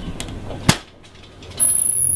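A light click and then a louder sharp knock less than a second in, then a faint steady high-pitched whine with a low hum starting near the end.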